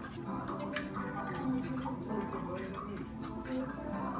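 Haircutting scissors snipping hair lifted on a comb: a quick, irregular run of light metallic clicks, several a second.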